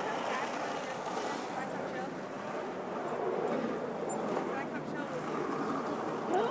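Steady outdoor background noise of road traffic, with faint voices at times.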